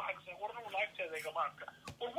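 Speech heard over a telephone line, with a single sharp click near the end.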